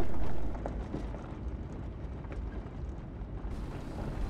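A car driving slowly, heard as a low, steady rumble of road and engine noise with a few faint ticks.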